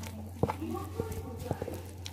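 Flour and water being mixed and kneaded into dough by hand in a bowl, with irregular soft knocks and squelches as the fingers press the dough against the bowl. A steady low hum runs underneath.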